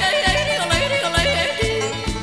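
A woman yodelling, her voice flipping quickly up and down in pitch, over a country string-band backing with bass and a steady beat.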